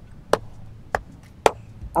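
A series of sharp knocks at a steady pace: four strikes, one about every half second.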